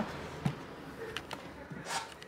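A few light clicks and taps from handling the opened laptop chassis and its parts on the bench.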